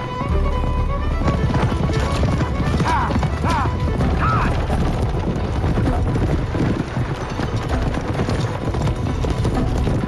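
Galloping horses pulling racing chariots: a fast, continuous run of hoofbeats on dirt, with the rumble of the chariots going with them. A few short, high calls come about three to four and a half seconds in, with film music underneath.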